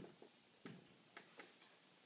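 Near silence broken by about half a dozen faint, irregular taps and clicks of a marker tip on a whiteboard as it writes.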